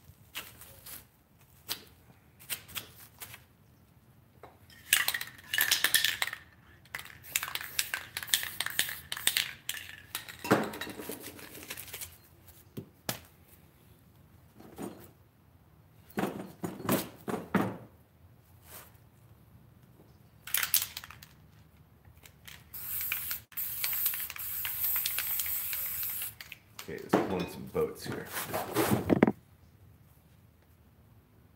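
Aerosol spray-paint cans hissing in spurts: one with a thin whistle about five seconds in, and a longer steady hiss a little past the middle. Between them come clinks and knocks of cans and tools being picked up and set down.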